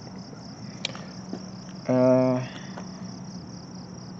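A steady, high-pitched insect chorus pulsing at about four beats a second, from outdoor insects calling in the background.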